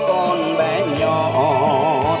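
Music from a cassette playing on a Sony CF-1980V mono radio-cassette's loudspeaker: a Vietnamese song with a melody line over a low accompaniment, ending on a held note with a wavering vibrato.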